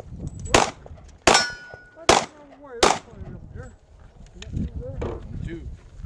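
Four pistol shots from a Glock 30 subcompact in .45 ACP, fired at an even pace about three-quarters of a second apart, with a steel target ringing after the second hit.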